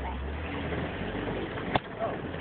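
Vehicle engine running with a low steady drone as it travels over snow, with one sharp click near the end.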